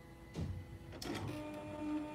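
Silhouette Cameo 3 vinyl cutter's carriage and roller motors running as it makes a double-cut pass through thick vinyl: a short click about a second in, then a steady motor whine.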